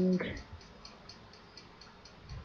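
A man's voice ends a word just after the start, then faint, evenly spaced ticking, about six ticks a second.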